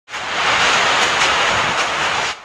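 A loud, steady rushing noise that starts abruptly at the very beginning.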